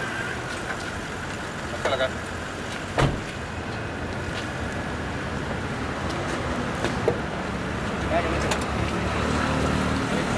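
A motor vehicle engine runs amid street traffic, with a sharp knock about three seconds in. The low engine rumble grows stronger near the end.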